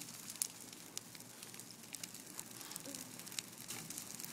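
Brush-pile bonfire crackling, with frequent sharp pops and snaps over a faint hiss.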